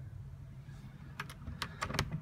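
A quick run of sharp clicks and light knocks in the second half, from the latch and knob of a small cabin door being worked open, over a low steady hum.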